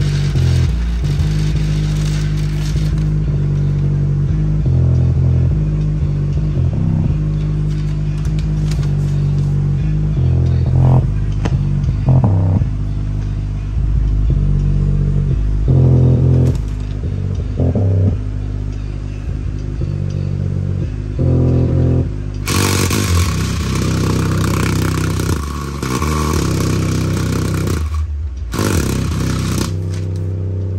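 A 4.5-inch Westra woofer in a box playing bass-heavy music loudly, its deep bass notes stepping from pitch to pitch every second or so. About three-quarters of the way in, a harsh hiss-like noise joins the bass.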